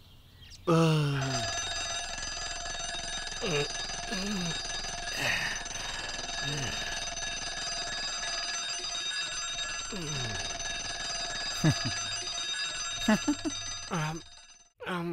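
Mechanical alarm clock bell ringing steadily for about twelve seconds, starting about a second in and cutting off just before the end. A man's short vocal sounds break in over it several times.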